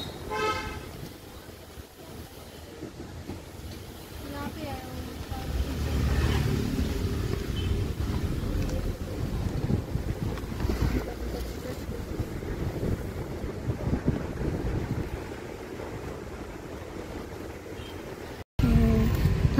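Inside a moving car: steady road and engine rumble that grows louder from about six seconds in, with a short vehicle horn toot about half a second in.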